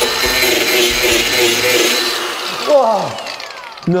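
A handheld power tool running under load with a loud, hissing, high whine. It is switched off about two seconds in and winds down with a steadily falling whine.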